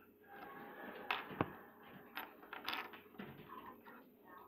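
Handling noise as hands move the recording device and small plastic toys about on a wooden table: rubbing and shuffling with a few sharp plastic clicks and knocks, the loudest about one and a half seconds in.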